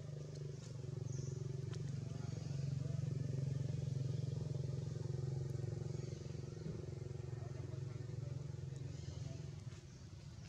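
A motor engine running steadily with a low hum, growing louder over the first few seconds and then fading away, like a vehicle passing.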